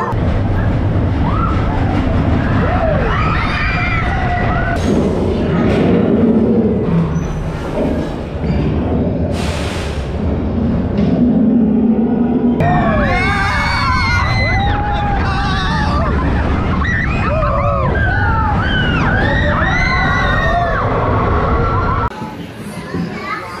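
Roller coaster train running on its track with a loud, steady rumble. From about halfway through, riders scream and whoop, their voices rising and falling in pitch.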